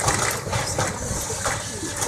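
Excavator demolishing a building: a steady noisy rumble of the machine at work, with the crushing of debris.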